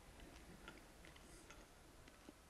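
Near silence: quiet room tone with a few faint, irregular small clicks.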